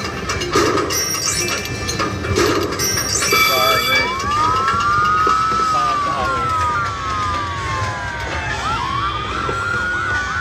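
Jackpot Factory slot machine's electronic bonus sound effects: chiming and clicking as boxes are picked in the pick-a-box bonus, then from about four seconds in, a series of siren-like whistling swoops that rise and fall.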